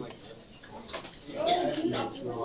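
Indistinct voices of people talking in a room, rising about one and a half seconds in, with a few light clicks and knocks among them.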